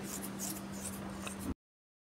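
Faint room tone with a steady low electrical hum and a few soft rustles of handling, which cuts off abruptly to dead silence about one and a half seconds in.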